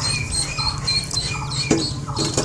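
Many short, high-pitched chirps from small animals, repeating quickly, over a steady low hum.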